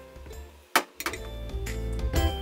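Background music with a steady bass line and pitched notes; a little under a second in, it drops out briefly around one sharp click, then comes back.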